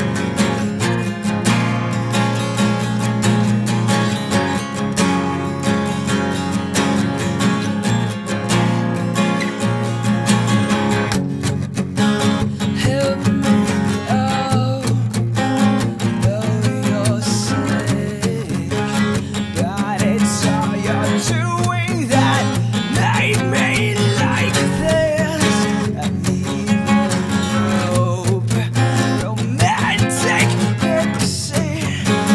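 Two acoustic guitars playing a song: one strums steady chords while the second picks a lead line over them, with a bending melody coming in at about twelve seconds.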